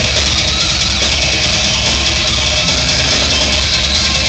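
Death metal band playing live at full volume: distorted electric guitars, bass and drums with cymbals, making an unbroken, dense wall of sound.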